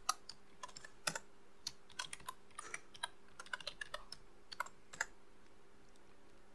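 Typing on a computer keyboard: irregular keystrokes, quickest in the middle and stopping about a second before the end, over a faint steady hum.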